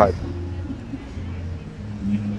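A steady low engine hum, like a motor vehicle running, under the outdoor background noise.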